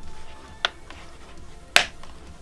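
Two sharp clicks, the second louder, as the spine clips of an Ultimate Ears Megaboom speaker snap into place under hand pressure.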